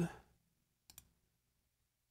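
Two quick, faint computer mouse clicks about a second in.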